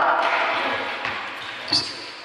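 The end of a man's commentary call, then a single sharp bounce of a basketball on the concrete court near the end, with the ring of the open hall around it.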